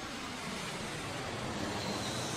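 Steady rushing noise of a jet airliner's engines in flight, growing slightly louder.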